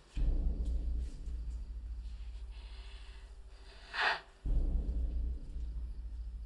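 Low, pulsing rumble of a horror-film score drone, with a short breathy burst about four seconds in.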